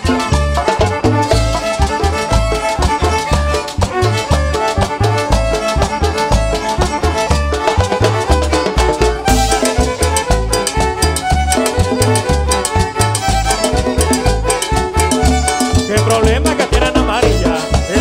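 A live band plays the instrumental opening of an upbeat música campirana dance song, with a steady, pulsing bass beat.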